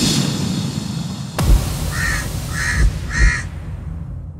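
Animated-intro sound effect: a loud rushing swell over a low rumble, a deep hit about a second and a half in, then three short, harsh bird caws about two-thirds of a second apart.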